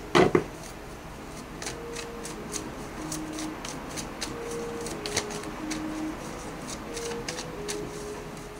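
Tarot cards being shuffled and handled by hand: a run of light, irregular papery clicks and flicks, a few each second. Under them runs a soft background melody of slow, held single notes. There is a short loud sound right at the start.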